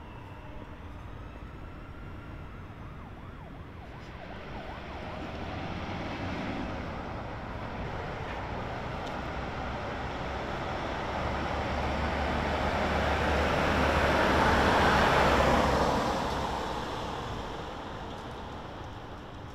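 A car drives along a street and passes close by: its engine and tyre noise build slowly to a peak near the end, with a low rumble, then fade away. A faint distant siren wails near the start.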